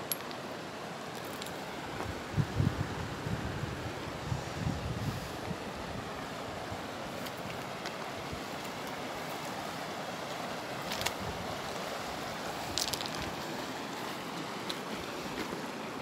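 Steady rush of a shallow river flowing among boulders, with a few gusts of wind buffeting the microphone about two to five seconds in.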